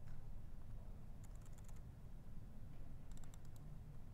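Computer keyboard being typed in two short bursts of keystrokes, one about a second in and one near the end, over a low steady hum.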